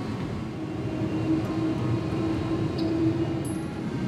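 Airliner cabin noise as the plane gathers speed on the runway: a steady low rumble of engines and wheels with a steady hum through it.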